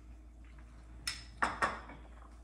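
Spoon and ceramic soup bowl clinking as they are handled and set down: three short knocks in quick succession a little after a second in.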